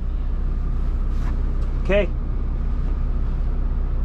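A semi-truck's diesel engine idling, heard from inside the cab as a steady low hum.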